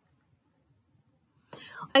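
Near silence with only a faint low room hum, then a voice starts speaking about a second and a half in.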